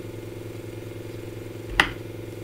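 Steady low electrical hum with a single sharp click near the end, the click of the slide being advanced to the next one.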